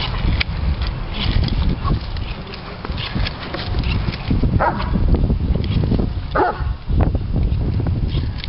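Doberman Pinscher excitedly chasing bubbles, giving two short barks about halfway through and again a couple of seconds later.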